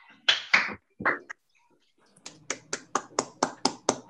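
A single person clapping, evenly spaced claps about five a second, starting about two seconds in. A few short loud sounds come before the claps, near the start.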